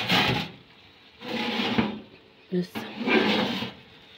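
Metal baking tray scraping along the oven rack as it is slid out of a gas oven, in three or four separate pulls.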